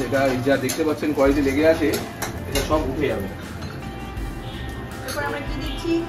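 Knife knocking and clinking on a cutting board while chopping, with a few clinks of kitchen utensils, over background music and a man's voice.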